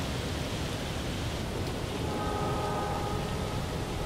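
Steady outdoor background hiss, with a faint held pitched tone for about a second and a half near the middle.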